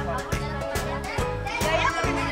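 Background music with a steady beat and a repeating bass line, with children's voices over it.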